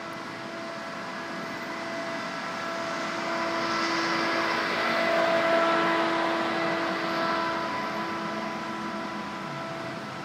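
A steady mechanical hum with several held pitches. It swells louder toward the middle and eases off again near the end.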